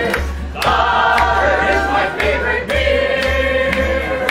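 A live folk band of costumed musicians singing together in chorus over acoustic instruments, with a steady low bass pulse underneath.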